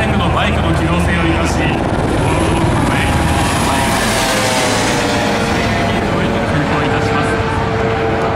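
Fire department helicopters flying low past the listener: a steady rotor and engine rumble, with a rushing noise that swells to a peak about four seconds in as one passes overhead, then eases.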